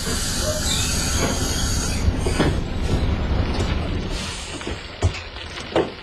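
Sound effect of a bus pulling in and stopping: a steady engine rumble with a high hiss and squeal over it in the first couple of seconds, dying down over the last two seconds.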